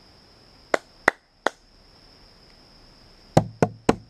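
Six short, sharp clicks: three about a second in, then three more in quick succession near the end.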